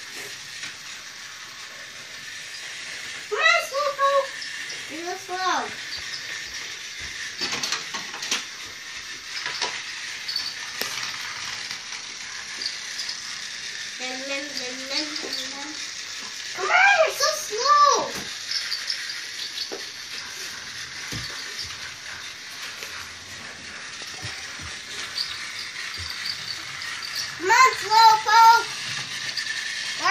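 A battery-powered toy train running along plastic track with a steady, faint high whir and light ticking. A young child's high-pitched calls and squeals come over it four times, loudest near the middle and near the end.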